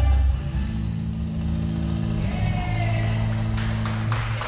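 Recorded dance music over a sound system: a strong bass beat that gives way, about half a second in, to long held low notes. Sharp clicks come in near the end.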